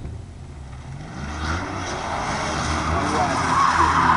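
Car engine accelerating hard through an autocross cone course, its pitch climbing, with tyre noise building and starting to squeal near the end.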